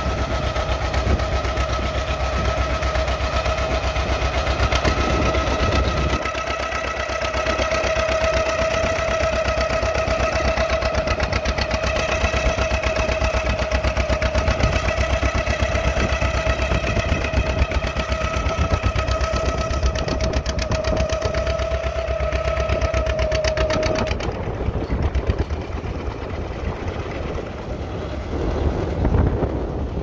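A John Deere D's two-cylinder engine running under heavy load with rapid, even popping as it drags a tractor-pull weight sled. Over it runs a steady high whine that cuts off some six seconds before the end.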